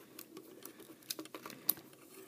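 Hard plastic parts of a Transformers action figure being handled and clicked into place: a run of small irregular clicks and taps, the sharpest one near the end.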